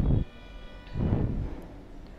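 A faint horn sounding one steady note for just under a second in the background, with low muffled rumbles of noise at the start and again about a second in.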